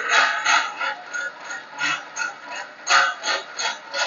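Irregular mechanical clicks and rasps, a few a second, from a DC shunt motor's brake-test rig. The handwheel on the spring-balance screw is being turned to slacken the brake belt on the motor's spinning brake drum and reduce the load.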